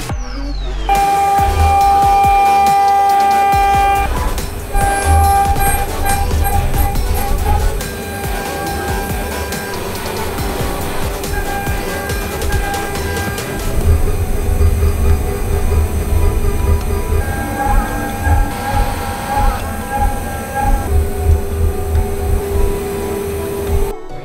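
Background electronic music with a steady low beat, over the steady high-pitched whine of a CNC milling spindle and end mill cutting an aluminium disc; the whine holds for several seconds at a time and breaks off briefly now and then.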